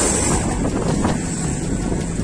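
Wind noise buffeting the microphone of a camera on a moving bicycle: a steady, rough low rumble.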